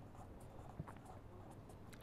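Felt-tip pen writing capital letters on paper: faint short scratching strokes of the tip, with a small tick about a second in.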